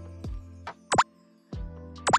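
Light background music with a cartoon 'pop' sound effect about a second in: a single quick rising bloop as an on-screen graphic pops up.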